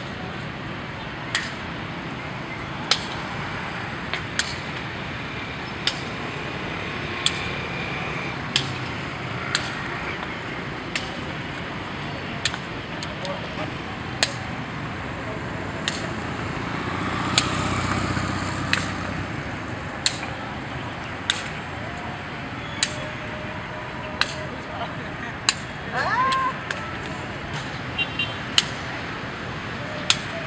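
Sharp taps of a shuttlecock being kicked back and forth between players, about one kick every second and a half, over steady street noise. A passing vehicle swells briefly around the middle.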